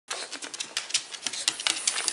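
A pug's claws clicking on a hard surface as it moves about: irregular light clicks, several a second.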